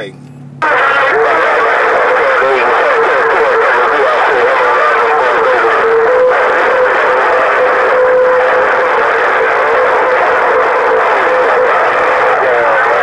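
President HR2510 radio receiver's speaker coming on with heavy long-distance static about half a second in. A steady heterodyne whistle runs through the static, and a weak distant station's voice is buried under it.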